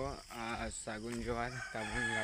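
A man's voice making several drawn-out, wordless, low-pitched notes in a row, each lasting less than a second.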